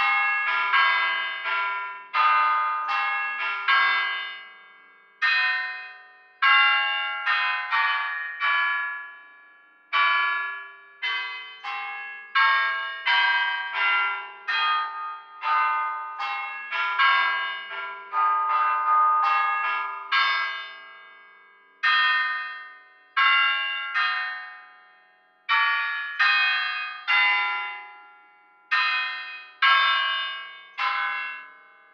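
Tuned bells, a chime or carillon, playing a melody: single struck notes one after another, each ringing out and fading, in phrases with short pauses between.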